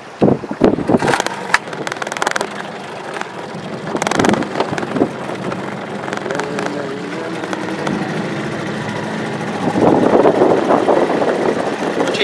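Wind buffeting the microphone in an open boat on choppy water, with a few knocks in the first two seconds and a louder gust near the end.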